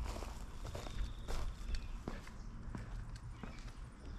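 Footsteps across a short, dry lawn: an irregular run of soft steps over a low steady rumble.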